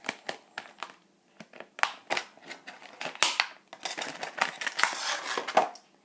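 Stiff clear plastic blister packaging being handled and pried open, giving a run of sharp clicks and crinkles that grows busier in the second half.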